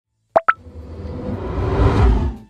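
Logo intro sound effect: two quick pops, the second higher than the first, followed by a whoosh with a deep rumble that swells steadily louder.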